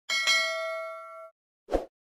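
Notification-bell 'ding' sound effect: one bright strike whose ringing tones fade for about a second before cutting off. A short pop follows near the end.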